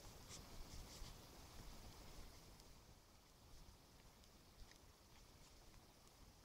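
Near silence: faint outdoor ambience with a low rumble and a few faint, irregular soft clicks.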